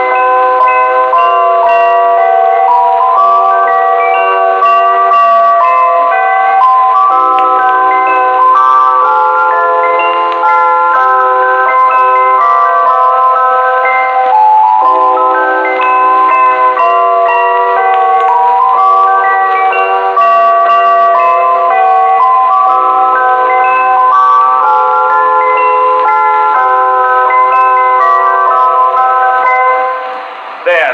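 A Christmas tune played on chimes, ringing bell notes that are often struck several together, heard as a 1921 acoustic recording from an Edison Diamond Disc record with no high treble.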